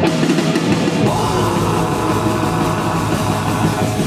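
Heavy metal band playing live: distorted electric guitar, bass guitar and drum kit, growing fuller about a second in.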